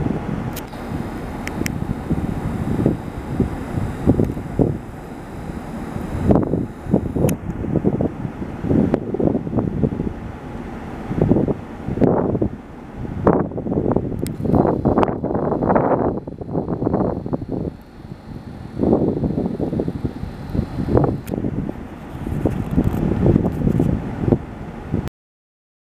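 Wind buffeting the camera microphone in irregular gusts: a low, rumbling noise that swells and drops every second or so, with brief lulls.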